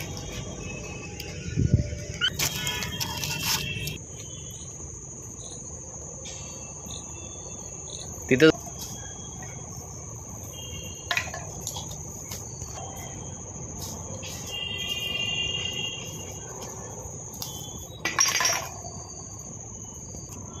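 Insects droning steadily at a high pitch, with a few short, sharp clinks and knocks as discarded glass liquor bottles are picked up out of the grass; the loudest knock comes a little before the middle.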